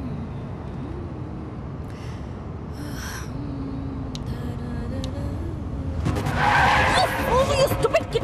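Steady engine and road noise inside a moving car. About six seconds in, tyres screech loudly as the car brakes hard.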